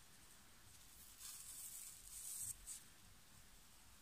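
Faint rustling of tarantula egg-sac silk being picked and pulled apart by fingers, lasting about a second in the middle, then a brief tick; otherwise near silence.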